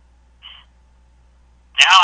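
A pause in a man's talk heard over a telephone-quality line: a faint steady low hum, one short faint sound about half a second in, then his speech starts again near the end.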